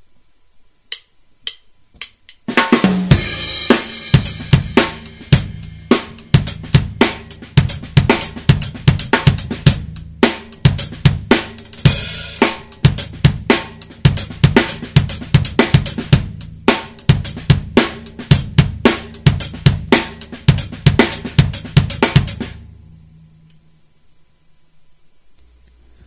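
Drum kit playing a linear funk groove, with bass drum, hi-hat, snare and snare ghost notes struck one at a time in sixteenth notes and accented snare hits. Four light stick clicks count it in, a cymbal crash opens the groove and another comes about halfway, and the playing stops a second or two before the end.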